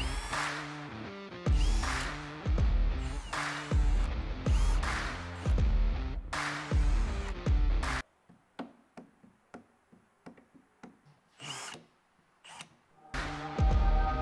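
Background music with a steady beat; about eight seconds in the music drops away, leaving short bursts from a cordless drill-driver backing screws out of a plywood crate. Then the music comes back near the end.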